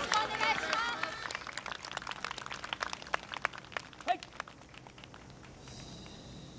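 Several voices call out together, then an outdoor crowd claps in scattered applause that thins out and dies away after about four seconds.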